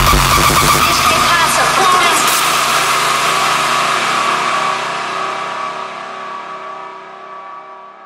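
The outro of a hardcore electronic track: the pounding kick drum stops at the start, and a sustained synthesizer chord rings on with a noisy, distorted sweep about two seconds in. The chord then fades steadily away.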